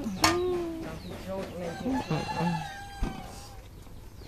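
A rooster crowing in the background, ending in one long held note in the second half, after a short stretch of a man's voice. A sharp knock comes just after the start and a fainter one about three seconds in.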